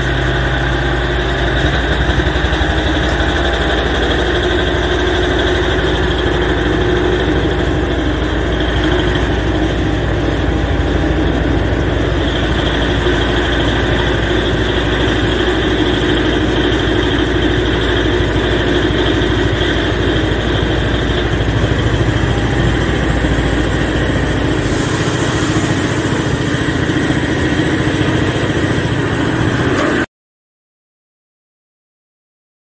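Diesel locomotive engine running steadily close by, a deep, even rumble with steady engine tones. Near the end the deep rumble drops away and a high hiss comes in.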